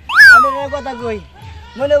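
A short, loud meow-like cry that glides sharply up and then straight back down, dropped in as a comic sound effect. It sits over background music with a steady low beat and a voice.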